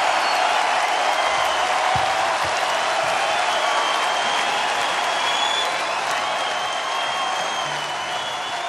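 Large concert crowd applauding and cheering after a song, slowly dying down.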